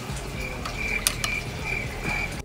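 Screwdriver backing out the screw of a motorcycle handlebar bar-end weight, metal squeaking in a series of short high chirps as the screw turns, with a sharp click about a second in.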